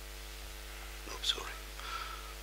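A faint muttered, half-whispered voice over a steady low electrical hum: a short breathy sound about a second in, then a brief voiced sound near the end.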